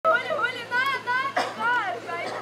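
A high-pitched voice calling out in sliding, sing-song tones, with a short sharp noise about one and a half seconds in.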